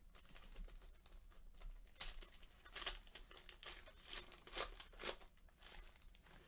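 Foil trading-card pack wrapper being torn open and crinkled by hand: light crackling at first, then a run of louder crinkling tears from about two seconds in.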